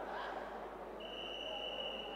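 Indoor hall background noise, then about halfway in a referee's whistle blown in one long steady note that carries on past the end.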